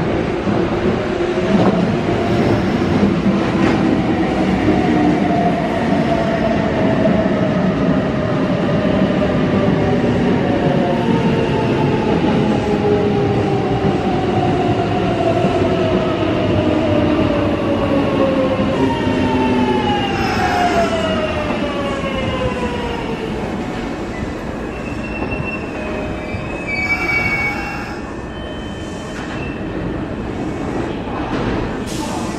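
Kintetsu 1026-series electric train arriving and braking to a stop, its traction motor whine falling steadily in pitch over about twenty seconds above the rumble of wheels on rail. The whine drops away quickly as the train halts, and a short hiss follows a few seconds later.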